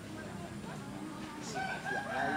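A rooster crowing, starting about one and a half seconds in, over faint background voices.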